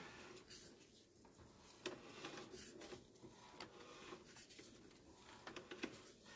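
Faint, irregular clicks and handling noise as a sewer inspection camera's push cable is drawn back through the pipe toward the cleanout.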